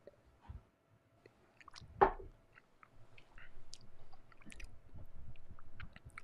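Quiet mouth sounds of whiskey tasting: a sip of bourbon, then the spirit being swished and chewed in the mouth, with small wet clicks. A short, louder sound comes about two seconds in.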